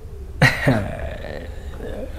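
A man's short, breathy laugh: two quick bursts about half a second in that trail off, over a low steady room hum.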